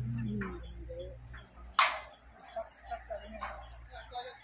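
Birds chirping on and off, over a low steady hum that fades out about a second and a half in. Just under two seconds in, a single sharp knock, the loudest sound.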